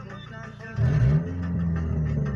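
Car engine heard from inside the cabin, revving up suddenly about a second in and then running on hard, over music playing in the car.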